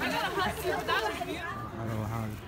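Several people's voices chattering over one another, with no clear words.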